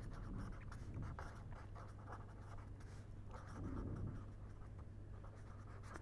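Pen scratching faintly on paper as handwriting is written out in a run of short strokes, over a low steady hum.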